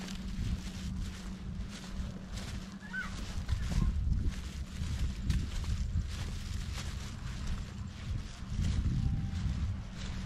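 Wind buffeting a handheld action camera's microphone while walking, with faint footsteps on sand and dry leaves and a steady low hum underneath. A brief high chirp about three seconds in.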